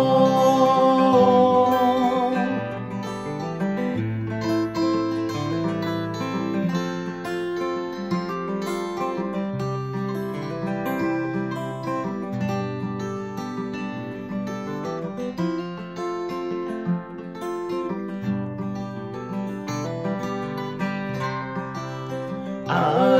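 Two acoustic guitars playing an instrumental break in a folk song, with a moving bass line under the chords. A man's held sung note trails off in the first couple of seconds.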